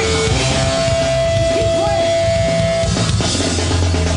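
Three-piece punk rock band playing live and loud: electric guitar, bass guitar and drums, with one long held guitar note for a couple of seconds.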